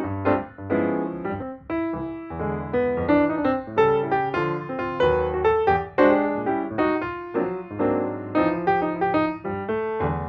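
Background music: a piano playing a steady run of chords and melody notes over a bass line.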